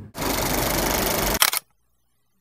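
Editing sound effect at a cut to the intro: a steady hiss-like burst lasting a little over a second, ending in a couple of sharp clicks.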